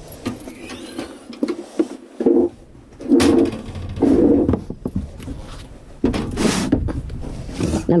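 Scattered light knocks and rustling from hands handling the attic ladder frame and tools, broken by short muffled voice sounds.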